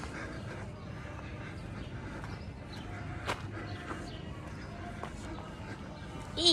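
Quiet outdoor ambience while walking: footsteps on a paved path with faint bird chirps, and a single sharp click about three seconds in.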